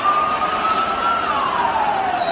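Police siren wailing: one slow rise in pitch that peaks past the middle and then falls away, over the steady noise of a large crowd.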